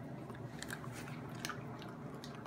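Small dog chewing a peanut taken from a hand: a few short, irregular crunching clicks.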